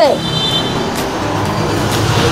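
Steady background noise with two light clicks and a brief faint high squeak as hands handle the clear plastic dust cover over the pressure-washer pump's pistons.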